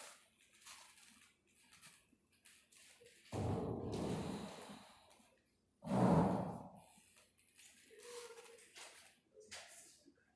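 Two heavy, sigh-like breaths through a full-face mask, the first about three seconds in and the second about six seconds in, with faint shuffling between them.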